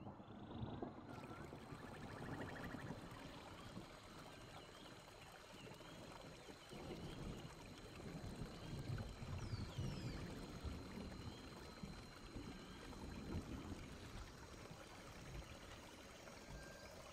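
Faint nature ambience: a steady wash like running water, with scattered short, high chirps.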